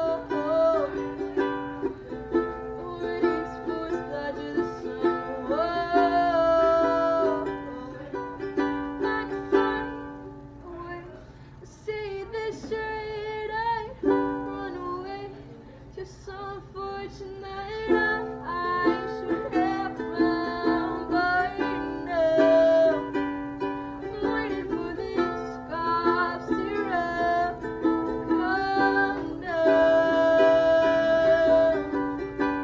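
A woman singing live to her own ukulele accompaniment: strummed chords under a sung melody. The music drops to a quieter passage about a third of the way in and again briefly around the middle before picking back up.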